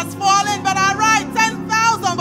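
A woman's amplified voice singing short phrases in worship over a steady, held instrumental backing.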